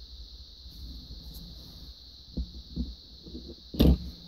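Quiet handling of small plastic Lego minifigures being moved and set down, with a couple of light clicks in the second half and one louder knock near the end.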